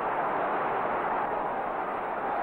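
Steady rushing noise with no distinct knocks or voices, held at an even level.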